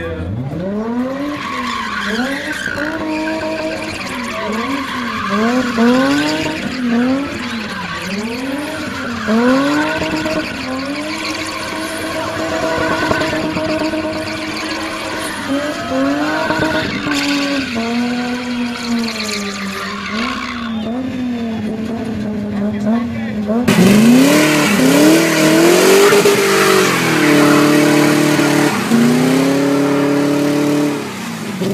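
A rear-wheel-drive car's engine is revved hard over and over while the rear tyres spin and squeal in a spinning run. The engine pitch climbs and drops about once a second. About 24 s in, after a cut, it gets louder and the revs are held high.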